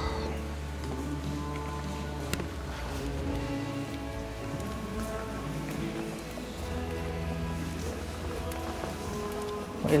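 Music playing in the church, with held notes that change every second or two.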